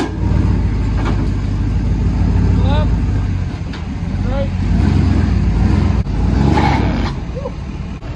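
Lifted Ford F-250 pickup's engine running with a deep, steady rumble under light throttle as the truck crawls up ramps onto a flatbed trailer.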